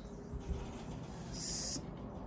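Faint rustle of hands smoothing crocheted granny-square panels on a table, with a light knock about half a second in and a short soft hiss about one and a half seconds in.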